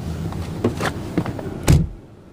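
Light clicks and taps, then one heavy thunk near the end, after which the outside background noise drops away sharply: the driver's door of a 2011 Buick Regal being shut.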